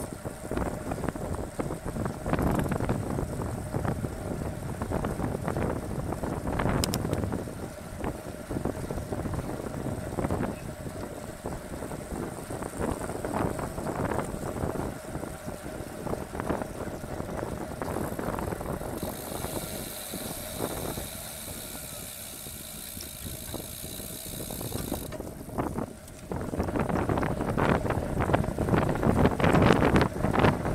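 Wind noise on a bike-mounted camera's microphone, with tyre noise from a road bike riding in a bunch. For several seconds past the middle the wind eases and a high, fast buzz like a coasting freehub ratchet takes over, before the wind noise returns near the end.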